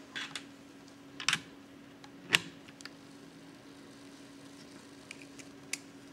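Irregular clicks and light knocks of test leads, crocodile clips and banana plugs being handled and clipped onto a resistor's terminals, the loudest knock a little after two seconds in and a few lighter clicks near the end.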